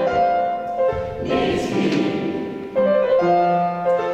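Mixed choir of men's and women's voices singing held chords, moving to a new chord about a second in and again shortly before three seconds.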